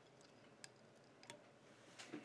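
Near silence with two faint, short clicks from small scissors snipping the end of the Mylar tinsel.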